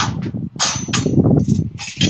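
Semi-trailer landing gear being cranked up by hand: a rapid, dense rattle of the crank and gearing that grows stronger about half a second in.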